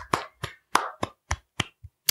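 Hand clapping: about seven sharp claps roughly a third of a second apart, growing fainter toward the end.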